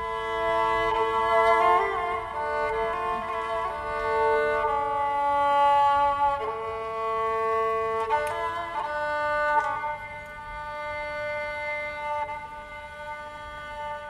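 Music: a slow melody on a bowed string instrument, long held notes that change pitch only every second or two.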